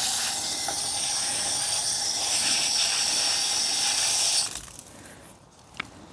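Water spraying from a garden hose's pistol-grip spray nozzle, a steady hiss that stops about four and a half seconds in.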